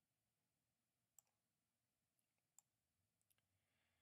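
Near silence, with a few faint, isolated computer mouse clicks.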